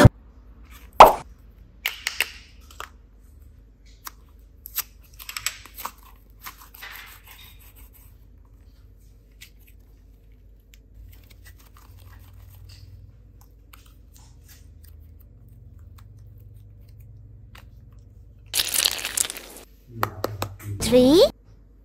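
Hands handling a plastic toy case and modeling clay: a sharp plastic snap about a second in, then scattered small clicks and crinkling, a long quiet stretch while soft clay is kneaded, and a loud brief rush of noise near the end.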